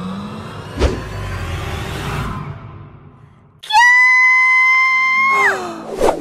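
A thud about a second in with a fading rush of noise, then a girl's high, drawn-out crying wail, held on one pitch for nearly two seconds before it drops away.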